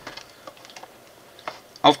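A few faint, light clicks and ticks from plastic bags of building bricks being handled in a cardboard box, followed by a short spoken word near the end.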